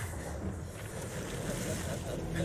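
Animated film soundtrack: a steady low rumble under a wash of noise like wind or surf, as a giant frost whale breaks up through the ice.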